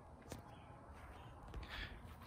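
Faint outdoor background noise, with a soft click about a third of a second in and a few faint scuffs near the end.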